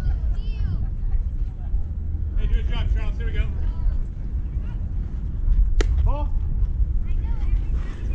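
Wind rumbling on the microphone, with spectators' voices calling out twice. About six seconds in comes one sharp crack of the baseball, followed at once by a short shout.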